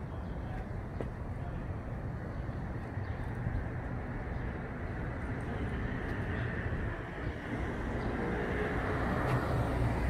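Street background noise: a steady low rumble of city traffic that grows a little louder toward the end.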